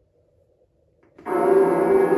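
Near silence with a faint hum, then about a second in the Fogging Grim Reaper animatronic's speaker suddenly starts loud music of several sustained tones as the prop activates.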